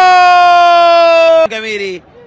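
Football commentator's long drawn-out shout of "goal": one loud held note sliding slowly down in pitch, breaking off about one and a half seconds in, then a shorter, lower falling call.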